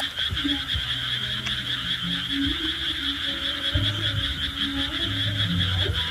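Frogs calling in a night chorus: scattered low held croaks come and go over a steady high-pitched trill.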